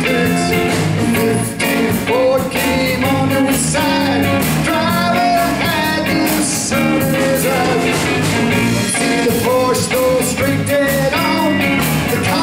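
Live rock-and-roll band playing loudly: electric guitar, bass guitar and drum kit, with a lead line of bending notes over a steady beat in an instrumental break.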